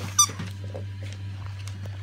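A squeaky dog toy gives one short, high squeak just after the start, amid faint rustling and crinkling of wrapping paper as a dog noses at a present.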